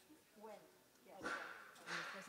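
Faint, indistinct voices of people in a large room, with louder rustling and handling noise starting about a second in.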